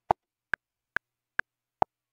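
Reaper's metronome clicking through the recording count-in, about two and a half clicks a second. The first click of each bar of four is louder and lower-pitched than the others.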